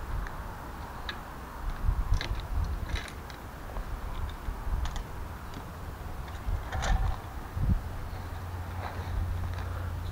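Scattered light clicks and clatter as a bow and wooden arrows are picked up and handled, over a steady low rumble.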